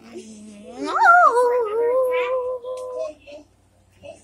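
A drawn-out howl: a held low note, a sharp upward swoop about a second in, then a steady higher note that stops about three seconds in.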